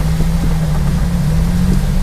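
Daihatsu Hijet microvan's engine and road noise heard from inside the cabin while driving: a steady, even drone.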